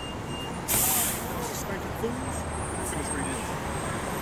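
City bus air brakes letting out a sharp hiss for about a second, starting a little under a second in, over steady traffic noise.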